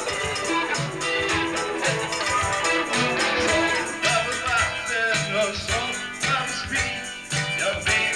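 Live band playing an upbeat number: electric guitars, drums and hand percussion with a steady beat, and vocals into the microphone.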